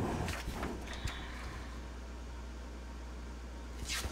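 Sheets of paper being handled and slid across the table: soft rustles in the first second, then a short bright swish of paper near the end, over a low steady hum.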